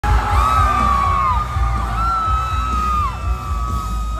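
Loud live band music in an arena, with heavy, pulsing bass and drum thumps, and fans screaming in long high-pitched shrieks that each fall away at the end.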